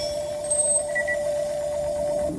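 Electronic launch sound effect played over a hall PA system: a steady electronic tone with a faint fast flutter, and a couple of short high beeps about halfway through.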